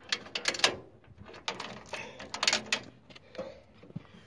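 Metal trailer-hitch hardware clinking and rattling: a cluster of quick clicks and jingles in the first second, then a longer run of them from about one and a half to three seconds in.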